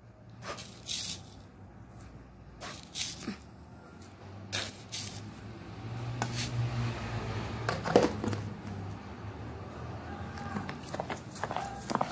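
Spoonfuls of sugar being scooped from a container and tipped into a stainless-steel mixing bowl of melted butter and semolina, with scattered light clicks and taps of the spoon, over a faint low hum.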